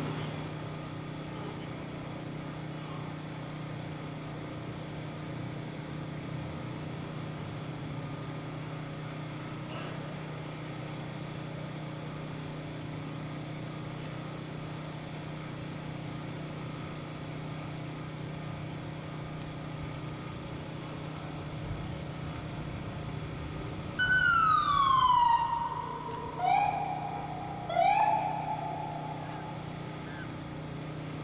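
Steady low hum of the street scene; then, from about 24 s, a warning siren sounds three times. The first is a loud falling wail that settles on a held note, and two shorter rising wails follow. This is the first warning signal of the blast countdown before a building implosion.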